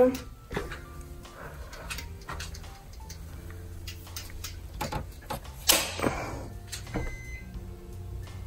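Plastic clicks and snaps of circuit breakers being handled and switched on in a home electrical panel, the sharpest snap about six seconds in. Faint music plays underneath.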